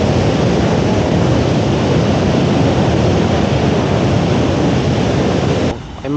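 Water from a dam's bell-mouth (morning glory) spillway gushing out of the outlet and falling between stone walls. It makes a steady, loud rush that cuts off suddenly near the end.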